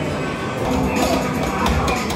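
Amusement arcade din: game machines playing music and jingles, with people talking among it.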